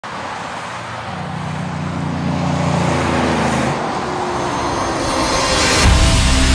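Road traffic noise that grows steadily louder, with low engine hums, and swells into a rushing sound just before the end.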